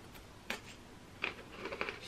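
A pretzel stick being chewed: three short, sharp crunches spread over two seconds, with quiet between them.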